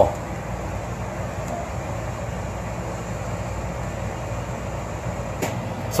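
Furrion Chill 15,500 BTU rooftop RV air conditioner running: a steady, even hum of fan and airflow, with a single faint click near the end.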